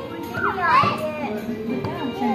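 A young child's high-pitched voice calls out briefly about half a second in, over background music playing in the restaurant.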